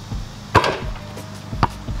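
Basketball thuds during a dribble-in dunk attempt: two sharp hits, the loudest about half a second in and a second one about a second later, with a couple of lighter taps.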